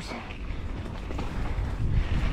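Mountain bike rolling down a dirt singletrack: a steady low rumble of tyres on the dirt.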